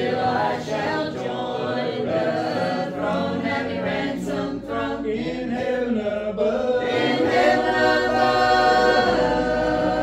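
Small mixed group of men and women singing a hymn a cappella, unaccompanied voices, growing louder in the second half.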